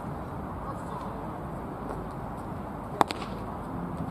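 A single sharp crack of a baseball impact about three seconds in, over steady background noise.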